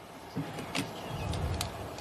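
Faint low rumble with a few light clicks, background noise coming over a caller's phone line from outdoors.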